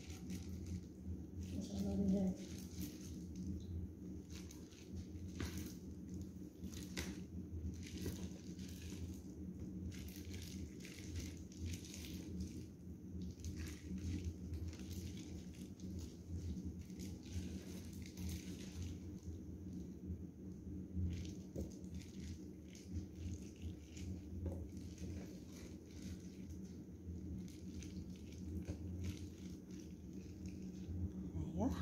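Wet squelching and crackling of a plastic-gloved hand mixing marinated raw chicken pieces and vegetables in a roasting tray: many short irregular clicks over a steady low hum.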